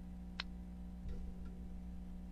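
Low steady hum of room tone, with one short sharp click about half a second in.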